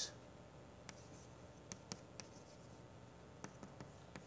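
Chalk writing on a blackboard, faint: about six short, sharp taps and strokes at irregular intervals as symbols are written.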